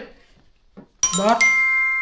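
A bright chime of several ringing tones, like a doorbell ding, struck suddenly about a second in and ringing on steadily under a man's voice.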